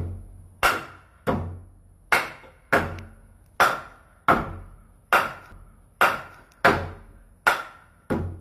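Hammer blows on a wooden block held against timber framing: a steady run of sharp knocks, about one every three quarters of a second, each ringing briefly.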